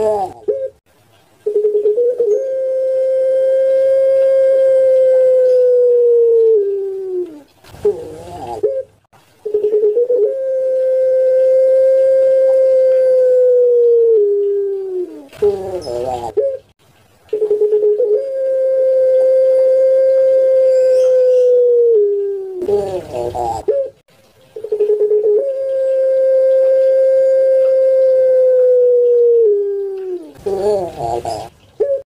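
Ringneck dove of the long-voiced 'puter pelung' type cooing: four long drawn-out coos, each held for about five seconds on one steady pitch and dropping at the end, with short broken notes between them.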